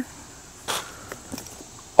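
A brief rustle under a second in, then a few faint clicks: a shoulder strap and the guidebook being handled and taken out of a padded camera bag.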